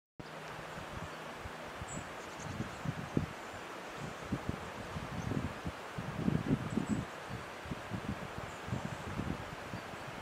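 Wind buffeting the microphone in irregular low gusts, heaviest about six to seven seconds in, over a steady rush of wind through the surrounding trees.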